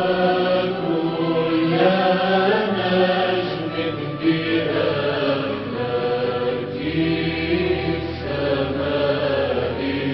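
Devotional chant: a voice sings long, ornamented melodic lines over a held low drone, and the drone changes pitch a few times.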